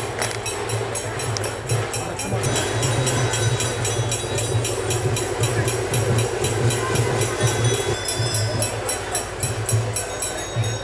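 Rhythmic percussion music with a fast, even beat of about four to five strokes a second over a pulsing low drum.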